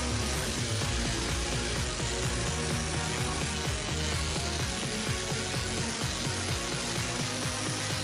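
Cordless random orbital sander running steadily as it sands a larch wood handrail, heard under background music.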